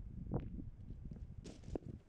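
Faint footsteps of a person walking out through a doorway, soft low thumps with a brief rising squeak about half a second in and a few light clicks near the end.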